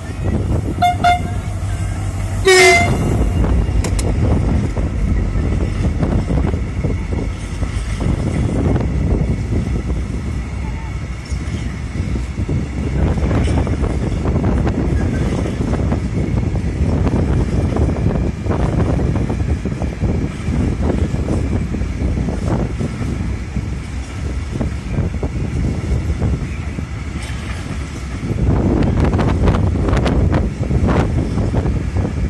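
Diesel freight train passing: the locomotive sounds two short horn blasts in the first few seconds, the second louder. Then its wagons roll by with a steady low rumble and repeated clatter of wheels on the rails.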